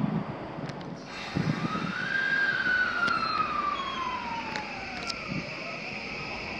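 Tokyu 3020 series electric train pulling away: the whine of its inverter-driven traction motors rises in pitch to a peak about two seconds in, then glides down, over a steady running rumble with a few short clicks.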